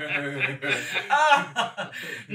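People chuckling and laughing, with speech mixed in; one voice sweeps up and back down in pitch in the middle.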